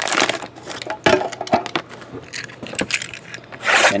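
Clear plastic wrapping crinkling and tearing as trading-card packaging is unwrapped by hand, with scattered clicks and light knocks of handling. There is a louder rush of crinkling just after the start and again near the end.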